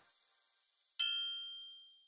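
A single bright metallic ding, struck once about a second in and ringing out, fading away over about a second.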